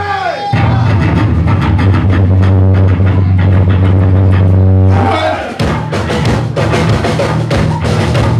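Live hardcore punk band with electric guitar, bass and drums: a held low note under drum and cymbal strokes, then the full band comes in at about five and a half seconds.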